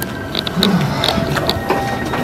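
Footsteps and a series of short clicks and knocks as a wooden cabinet is reached and its doors handled.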